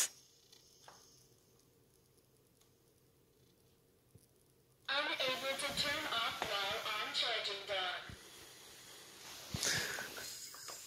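Robot vacuum starting up after its power button is pressed: near silence for about five seconds, then a voice for about three seconds, likely the robot's spoken start-up prompt. After that, a faint steady running sound as it sets off.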